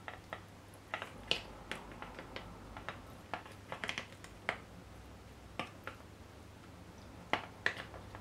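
Metal spoon clicking and tapping against a glass bowl and a plastic ice cube tray while scooping blended green seasoning into the tray's cubes: irregular light clicks, with a sharper one about a second in and two near the end.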